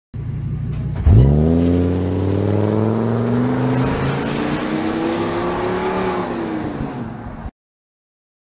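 Ford E-350 Econoline van's V10 engine idling, then pulling away hard about a second in. The exhaust note climbs in pitch as the van accelerates away, eases slightly and fades with distance, then cuts off abruptly near the end.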